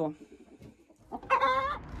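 A domestic hen gives one drawn-out call about a second in, lasting under a second.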